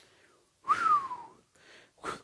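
A man's short whistle sliding down in pitch over a breathy exhale, a "phew" of relief at a close call.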